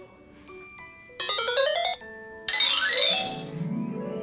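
Electronic toy laptop's built-in sound effects: a quick rising run of buzzy electronic beeps about a second in, then a longer run of gliding electronic tones as the game moves to its next picture.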